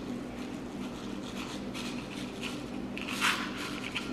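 Small radish seeds sprinkled by hand onto a tray of moist soil, a faint scattered patter of light ticks and rustles, with a brief louder hiss about three seconds in.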